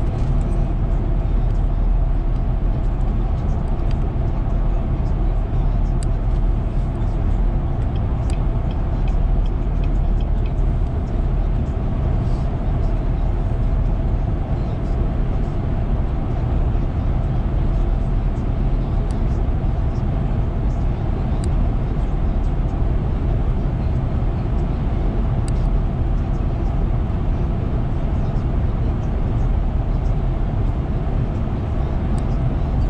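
Steady road noise inside a car cruising at highway speed: tyre and engine rumble, heaviest in the low end, with a few faint clicks.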